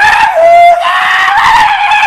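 A man's loud, drawn-out scream, held for about two seconds on one pitch that rises slightly, then fading at the end.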